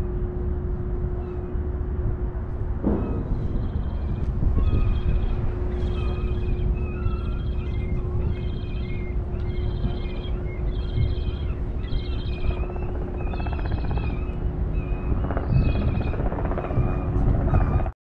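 Wind and engine rumble on a ferry's open deck, with a steady hum underneath. From about three to four seconds in, faint high chirps repeat evenly, a bit more than once a second.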